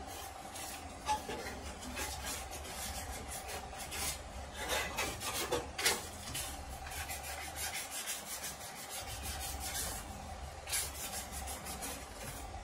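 Sandpaper rubbed by hand back and forth over the bare metal rear body panel of a Suzuki Swift, in a run of quick scratchy strokes, busiest about halfway through. A steady low hum runs underneath.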